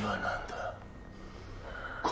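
A man's voice speaking briefly, with a breathy gasp, over a low steady hum. It goes quieter about a second in.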